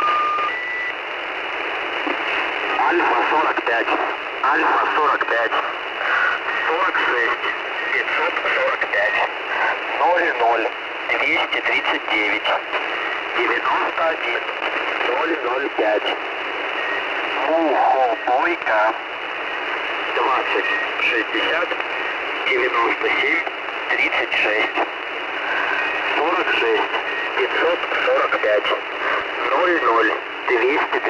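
Russian voice message from the military radio station 'The Squeaky Wheel' (Al'fa-45), received on shortwave: a voice reading out a call sign and number groups, narrow and tinny, under a steady hiss of radio static.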